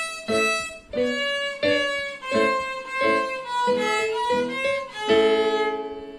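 A violin playing a phrase of separate, short notes, then one long held final note about five seconds in that dies away at the end of the phrase.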